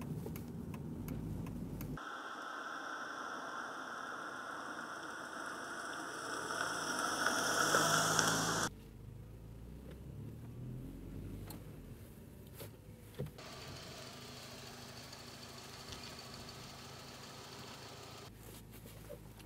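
Car in motion heard from inside the cabin: engine and road noise grow louder over several seconds, then cut off abruptly, leaving a quieter steady hum.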